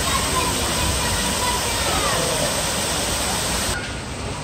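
Steady rush of water from artificial rock waterfalls spilling into a swimming pool. The water noise drops away abruptly near the end.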